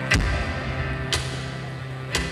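Live band playing an instrumental passage of a folk-rock song: acoustic guitars over a held low bass note, with a drum struck about once a second.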